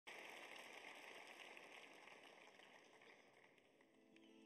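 Near silence: a faint, even hiss that starts abruptly and slowly fades away.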